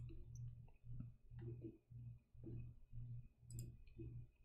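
A few faint computer-mouse clicks over a low hum, close to silence.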